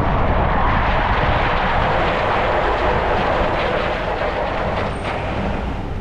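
A car rolling slowly across a snow-covered forecourt: steady rushing tyre and road noise over a low engine rumble, easing slightly near the end.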